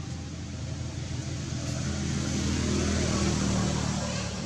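A motor vehicle engine running nearby, with a steady low hum that grows louder through the second half and eases off near the end.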